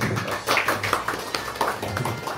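A small group of people clapping, with quick irregular hand claps.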